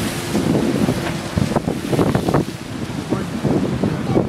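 Wind buffeting the microphone over the rush of surf breaking against a seawall.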